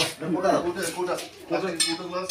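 People talking, and near the end a bright metallic clink with a high ringing begins.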